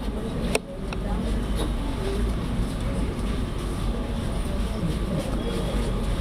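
Crowd murmur of several people talking at once over a steady low rumble, with one sharp click about half a second in followed by a brief drop in level.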